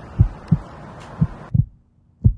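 Heartbeat sound effect: low double thumps about once a second, over a faint hiss that drops away about one and a half seconds in.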